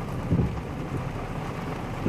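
Heavy rain on a car, heard from inside the cabin as a steady patter on the windshield and roof, with a dull low thump about a third of a second in.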